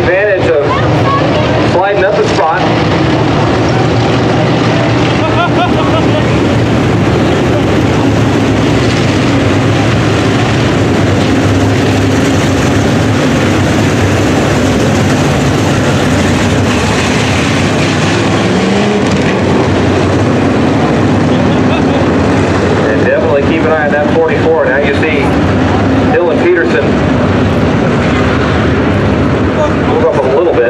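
A field of IMCA Sport Modified dirt-track race cars running around the oval, their engines a loud, steady drone.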